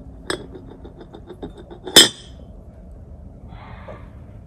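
Paintbrush knocking against a small ceramic paint dish while being loaded: a clink, a quick run of light ringing taps, then one sharp, loud clink about two seconds in.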